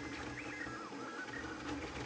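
Stepper motors of a high-speed CoreXY 3D printer running at 58 volts, with a soft steady hiss and short whines that rise and fall as the print head speeds up and slows down. The track mixes the print recording with a dry run without part-cooling fans, so the motor movement is heard over the fans.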